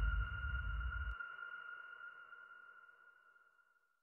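A steady high electronic tone, a single pitch with a fainter overtone, fading out over about three seconds. Under it a low rumble cuts off about a second in.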